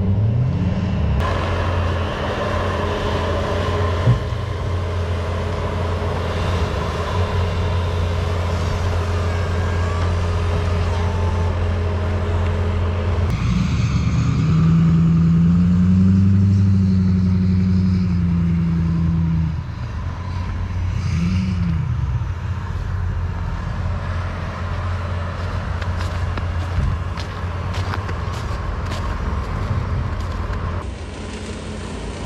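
Pickup truck engines running as the trucks plow snow. About halfway through, an engine revs up and back down over several seconds, and once more briefly a little later.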